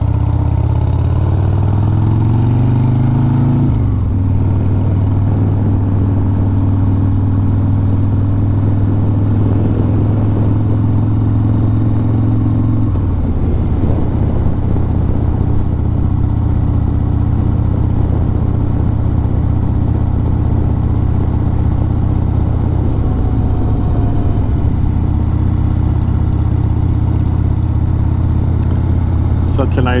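The V-twin engine of a 1991 Harley-Davidson Dyna Glide Sturgis, heard from the rider's seat while riding. Its pitch rises over the first few seconds as the bike accelerates, then holds at a steady cruise. About thirteen seconds in, the pitch drops a step and the engine runs steadily again.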